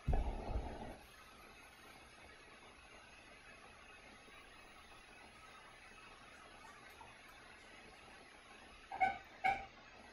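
Quiet room tone with a brief low rumble or bump in the first second, and two short pitched sounds, half a second apart, near the end.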